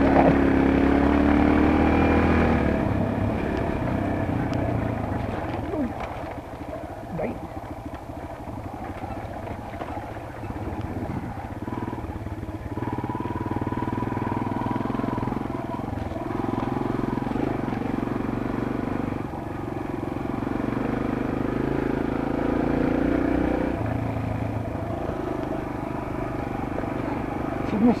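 Kawasaki KLX140G trail bike's small single-cylinder four-stroke engine running under way on a dirt trail. Its revs rise and fall with throttle and gear changes, loudest in the first couple of seconds.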